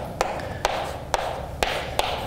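Chalk writing on a blackboard: sharp taps of the chalk striking the board about every half second, with faint scratching between them as symbols are written.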